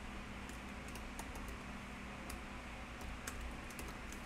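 Typing on a computer keyboard: faint, irregular keystroke clicks, bunching up near the end, over a steady low hum.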